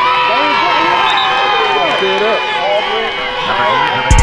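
Many voices shouting and cheering at once at a youth football game, some in long, drawn-out yells.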